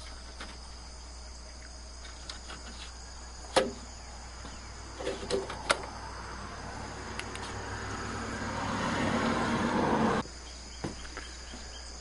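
A few sharp clicks from a car's plastic air-intake housing and its metal spring clips being handled, over a steady high-pitched background tone. Partway through, a rushing noise swells for about four seconds and then stops abruptly.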